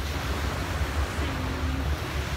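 Wind buffeting a handheld phone's microphone over the steady wash of small waves breaking on a sandy beach.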